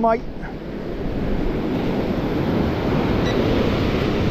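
Surf breaking and washing up a sandy beach: a steady rush of water that builds gradually after the first second.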